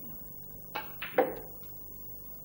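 Snooker balls knocking: a single sharp click, then two louder clicks close together just after a second in, the last the loudest, as a red goes into the corner pocket.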